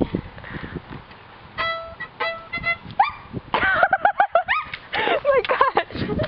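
A few short bowed violin notes on one high pitch: a single held note, then several quick strokes on the same note, like a player checking her pitch. They are followed by a rising glide and then a rapid run of short, high, wavering vocal calls.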